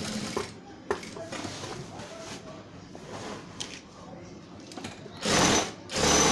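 Industrial sewing machine stitching through a thick shaggy rug in slow, stop-start runs, with a steady hum at first and a quieter stretch in the middle. A loud rush of noise comes near the end.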